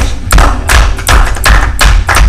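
Loud, evenly spaced thumps, about three a second, with a heavy low boom, like hands pounding on a conference table.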